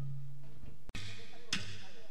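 Quiet gap between two pieces of a live banda medley: the band's last low note fades out, the sound briefly cuts out just before a second in, and then only a faint low hum, a few soft knocks and faint voices are heard before the band starts again.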